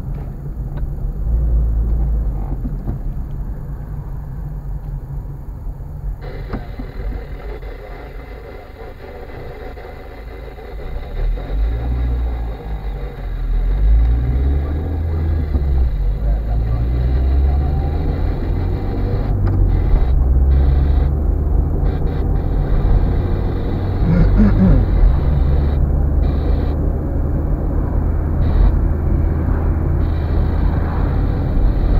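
Car engine and road noise heard from inside the cabin: a steady low rumble that grows louder about a third of the way in as the car picks up speed.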